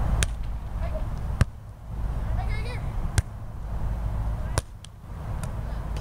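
A volleyball being struck back and forth in a rally on a sand court: about six sharp smacks, spaced a second or so apart, over a steady low rumble. A faint shout comes in the middle.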